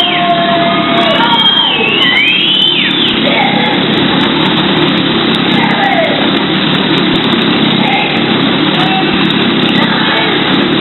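Motorcycle engine running loudly and steadily as the bike circles the vertical wooden wall of a Wall of Death drum.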